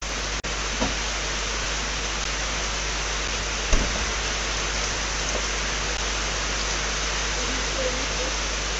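Steady hiss with a low electrical hum from a security camera's microphone feed, starting suddenly, with one brief knock a little before the middle.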